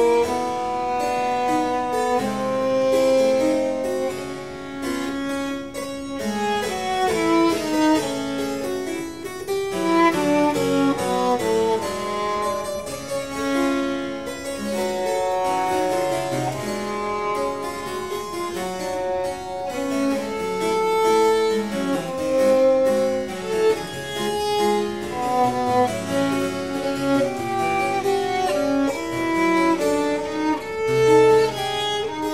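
Baroque violin with gut strings and harpsichord playing a duet, the bowed violin melody over the harpsichord's plucked chords, in a piece with Brazilian popular-music rhythms and harmonies.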